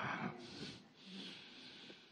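A man's short breath between phrases, then faint room noise.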